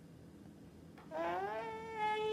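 An eight-month-old baby vocalizing: a long, drawn-out whiny call that starts about a second in and rises in pitch.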